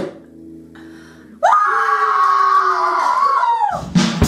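An acoustic guitar chord rings out quietly after the last bongo strike, then a person gives a long, loud scream of about two seconds that swoops up at the start and falls away at the end.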